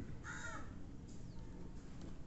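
A bird calls once, briefly, near the start, heard faintly over the soft scratch of a pen writing on paper.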